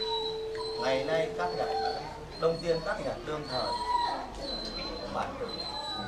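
Indistinct chatter and murmuring from a crowd of people, with a steady pitched tone held for about the first two seconds.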